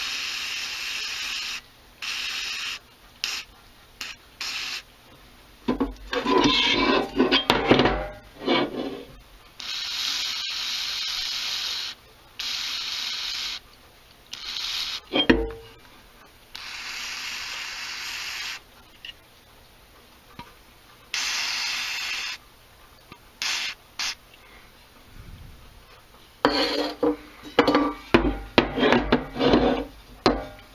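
An aerosol can of Finish Line Speed Degreaser spraying onto an aluminium engine case half in repeated bursts of hiss, some under a second and some about two seconds long. Between the sprays the metal case clatters and knocks as it is handled and turned, around six to nine seconds in and again near the end.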